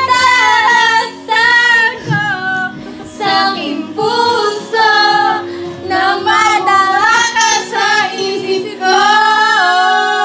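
A young woman singing into a handheld corded microphone, in phrases of a second or two with several long held notes.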